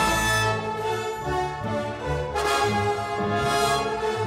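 Orchestral music led by brass, holding sustained chords, with a brighter swell about two and a half seconds in.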